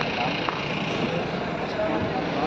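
Outdoor ambience of distant voices over a steady hum of motor vehicles.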